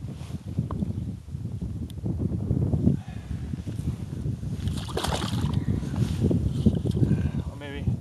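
Wind buffeting the microphone in a steady low rumble, with water sloshing in an ice-fishing hole as a northern pike is held and moved about in it; a louder burst comes about five seconds in.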